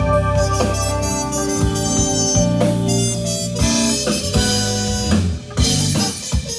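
Live jazz-funk band playing: a trumpet holding sustained lead notes over electric bass, electric guitar, keyboard and drum kit. The band drops out briefly near the end and comes straight back in.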